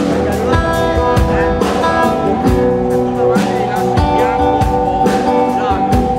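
Live blues band playing an instrumental passage: electric guitar lines over sustained keyboard chords and a steady drum beat.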